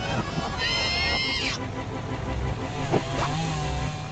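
Cartoon propeller biplane engine droning with a fast, steady low pulse. A brief high squealing effect sounds about a second in, and a short sweeping whoosh near three seconds.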